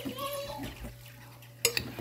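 A couple of light clinks of kitchenware at a crock pot about one and a half seconds in, over a low steady hum.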